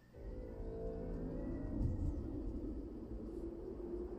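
Opening of a Dolby Atmos demonstration soundtrack: a deep rumble with sustained low tones swells in just after the start and holds steady.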